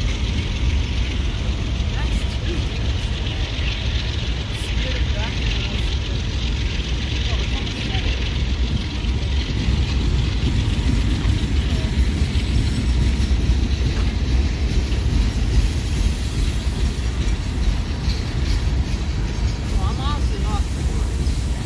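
Freight cars rolling past on the rails, a steady deep rumble with wheel and rail noise, alongside diesel locomotives running close by.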